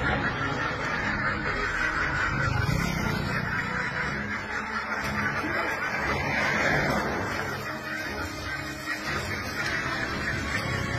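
A large flock of domestic ducks quacking together in a continuous din as they crowd down a ramp off a duck transport truck, with a low steady hum underneath.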